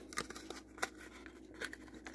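Faint, irregular clicks and scrapes of a small card box being opened by hand and trading cards being slid out of it.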